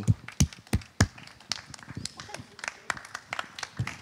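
Applause from a small audience: scattered, irregular hand claps, several a second, thinning out near the end.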